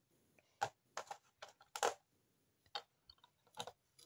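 Small LEGO plastic pieces being handled and pressed into place: a scatter of light, irregular clicks and taps, several close together in the middle.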